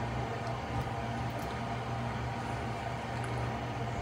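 A steady low mechanical hum of room background noise, with a couple of faint ticks about a second in.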